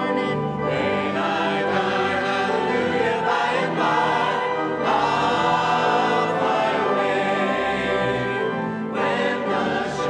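A church choir singing a hymn, with sustained notes that change every second or so and no break in the music.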